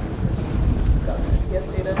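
Low rumbling noise on a clip-on microphone, like air or clothing brushing against it, with a faint off-mic voice underneath.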